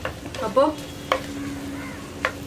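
Chopped onions sizzling as they sauté in hot oil in a nonstick pan, stirred with a wooden spatula that knocks against the pan about three times.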